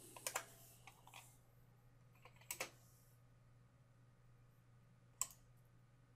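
Near silence with a handful of short, spaced-out clicks from computer keys and mouse buttons, over a faint steady low hum.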